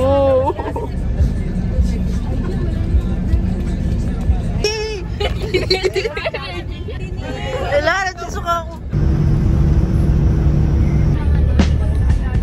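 Low, steady rumble inside a coach bus cabin, with passengers' voices chattering and calling out through the middle. About nine seconds in, the sound switches to a steadier hum with low held tones.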